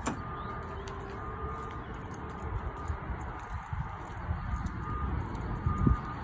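Footsteps on pavement and a low rumble of wind and handling on a moving phone microphone, with a faint short high beep-like tone repeating about once a second in the background.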